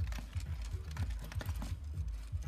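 Rapid mechanical clicking and clattering from the motors and gears of Furby toys as they move about dancing, over a quick low thumping.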